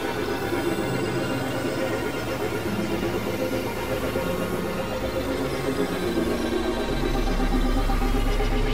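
Experimental electronic synthesizer music: dense layered drones, with low notes shifting in steps beneath them. A deep bass drone comes in near the end.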